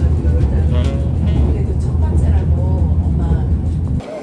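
Subway train carriage running, a loud steady low rumble from inside the car, with a voice and music heard over it.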